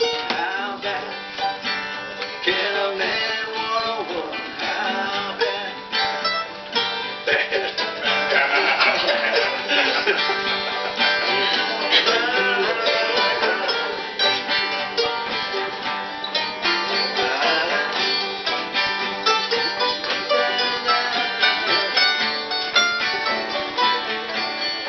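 Instrumental break of acoustic string instruments played live: strummed acoustic guitar with picked mandolin lines, and a banjo in the mix, its notes dense and steady throughout.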